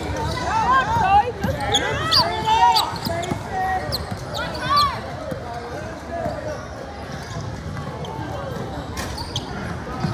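Basketball shoes squeaking on a hardwood court, short rising and falling squeaks clustered in the first half, with a basketball bouncing and spectators' voices throughout.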